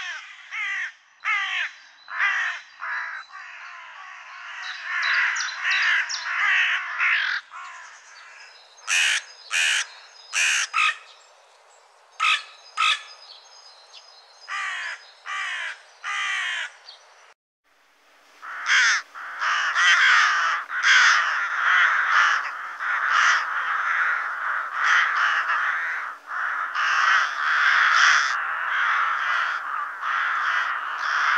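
Carrion crows cawing: harsh caws in quick series, then, after a change of recording about seven seconds in, spaced, sharper caws. After a short break about eighteen seconds in, rooks calling in a dense, overlapping chorus of harsh caws.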